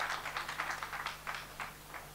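Scattered applause from a small audience, separate claps a few times a second that thin out and die away about a second and a half in.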